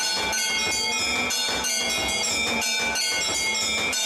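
Temple bells ringing in quick, even strokes, about three a second, their ringing tones overlapping one another, as in a Hindu aarti at a havan.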